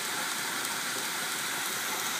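Homemade 2x72 belt grinder running with nothing against the belt: a steady, even hiss from the abrasive belt travelling over its wheels, driven by a salvaged treadmill DC motor.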